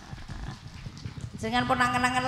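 Soft, irregular low knocks for about a second and a half, then a woman's voice over the PA holding one long, steady note.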